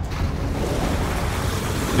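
A steady rushing noise like surf or churning water, over a low hum: underwater ambience laid under the footage.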